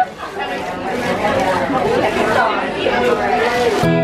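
Several people talking at once: the chatter of a small gathering of guests. Guitar music starts abruptly just before the end.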